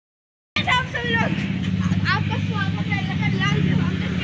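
A steady low engine hum with people's voices over it, starting suddenly about half a second in after silence.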